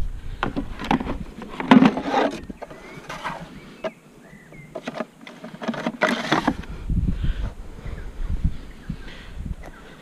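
Knocks and clatter of tools being loaded into a steel excavator bucket, a battery chainsaw laid in among petrol chainsaws and plastic fuel cans. The handling comes in two bursts, one at the start and one about six seconds in, with a quieter stretch between.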